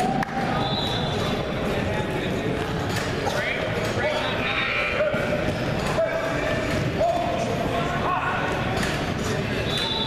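Indistinct voices and shouts echoing in a gymnasium, with occasional squeaks and thumps from the wrestlers' bodies and shoes on the mat.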